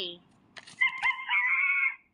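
A recorded animal call played through a talking toy's small speaker: one pitched call lasting about a second that cuts off abruptly.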